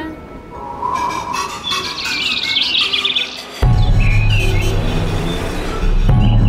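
Birds chirping and twittering over an intro music bed; a little over halfway through, a deep, steady low tone comes in suddenly and holds.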